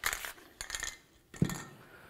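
Two short hissing bursts of copper anti-seize sprayed from an aerosol can onto the face of a new wheel bearing hub.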